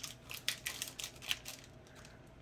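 Pokémon trading cards being leafed through and squared up in the hand: a run of light, irregular clicks and taps as the cards slide and snap against each other, thinning out near the end.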